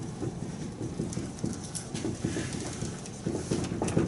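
Dry-erase marker writing on a whiteboard: an irregular run of short taps and scrapes as the letters are stroked out.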